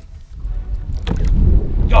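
Wind buffeting the microphone: a loud, uneven low rumble that comes up suddenly about half a second in.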